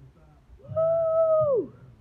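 A woman whoops a long, high "woo!", held for about a second and then falling off at the end.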